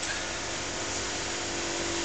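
A steady mechanical hum with a faint constant tone under an even hiss, unchanging throughout.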